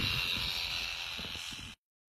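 Electric sheep shears running with a steady high buzz as they cut through a sheep's wool, fading slightly, then cutting off suddenly near the end.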